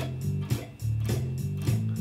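Drum machine beat at 103 beats per minute: evenly spaced hits about every half second, with low sustained tones underneath.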